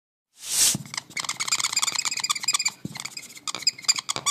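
A brief whoosh about half a second in, then a dry-erase marker squeaking on a whiteboard in quick short strokes as it writes, with a short break just before three seconds.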